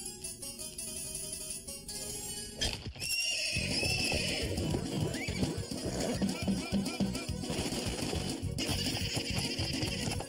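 Cartoon soundtrack music with a comic sound effect: a quieter cue, a sharp swooping hit about two and a half seconds in, then a louder, quick rhythmic cue with short squeaky glides over it.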